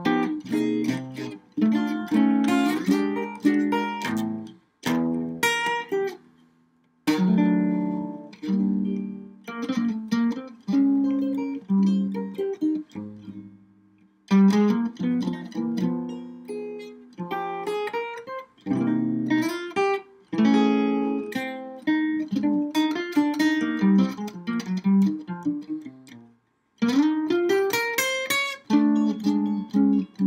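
Archtop jazz guitar played solo, chords and single-note lines in phrases broken by several short pauses.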